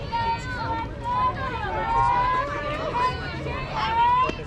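Several voices calling out at once, overlapping drawn-out shouts and chatter with no single clear speaker, like players and spectators cheering on a softball pitch.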